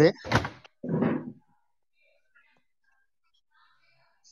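A voice over an audio call finishing a few words, then a short muffled bump about a second in, followed by near-silent room tone.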